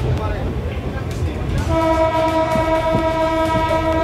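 An electric suburban train's horn sounding one long, steady blast, starting a little before halfway through, over the low rumble of the train.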